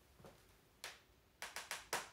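Sharp taps and knocks from hands handling a front bumper: one about a second in, then four quick ones near the end.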